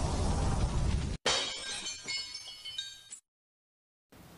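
Intro sound effect: a dense rushing noise that cuts off abruptly about a second in, followed by a glass-shatter effect whose tinkling, ringing shards die away over about two seconds.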